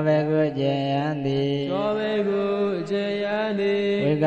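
A man's voice chanting Pali grammar text in a melodic recitation tone, holding long notes with slow rises and falls in pitch and brief breaks between phrases.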